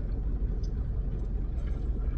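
Steady low rumble inside a car's cabin.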